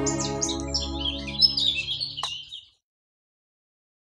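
Small birds chirping in quick high twitters over the last held, fading chord of the song's accompaniment; both stop abruptly a little over halfway through.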